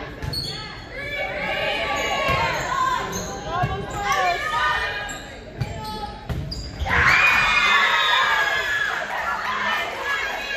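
Volleyball rally in a gym hall: the ball struck several times among players' calls and shouts, then about seven seconds in a loud burst of cheering and shouting as the point is won.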